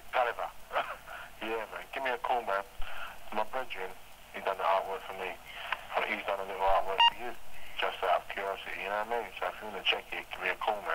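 A man talking over a telephone line, the voice thin and narrow as in an answering-machine message, with a short beep about seven seconds in.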